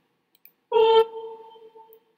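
A single pitched note from the Noteflight score editor's playback, sounded as a note is entered in the melody. It starts sharply about two-thirds of a second in and fades over roughly a second, just after a faint mouse click.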